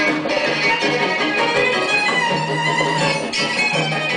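Live instrumental passage of bowed and plucked strings with piano, no voice, in an ongoing song.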